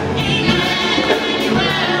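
Live band playing gospel music: voices singing together over drum kit, bass and electric guitar, with sustained sung notes.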